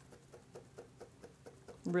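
A pleated hand fan being waved, a faint, quick flapping about four strokes a second.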